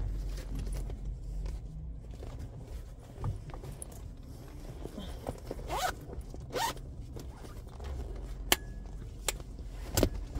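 A jacket being put on and zipped up in a car: fabric rustling, two quick zipper pulls a little past the middle, and a few sharp clicks near the end.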